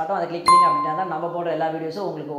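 A single clear chime, the notification-bell sound effect of a subscribe-button animation, about half a second in, fading out over about half a second, over a man talking.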